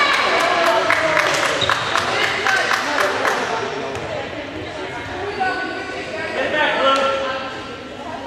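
Players and spectators in a gym clapping quickly and in rhythm for the first three seconds or so, over overlapping voices. Then come scattered calls and chatter, with a single sharp knock of a ball about seven seconds in.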